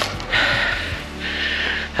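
A man breathing hard after climbing a steep slope, two long, loud breaths in a row, over background music.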